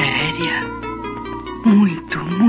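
A woman's voice speaking film dialogue with rising and falling pitch, over soft background music.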